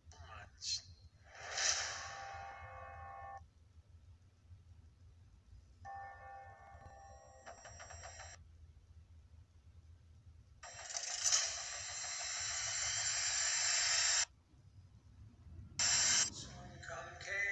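Film trailer audio playing from a speaker: short stretches of dialogue and pitched effects, then a dense swell of sound that grows louder for about four seconds and cuts off suddenly.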